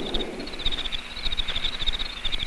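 Insects chirping outdoors: a rapid, high-pitched pulsing trill over faint background noise.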